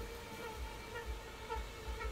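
Faint steady buzzing hum, with soft low rumbles on the microphone coming and going.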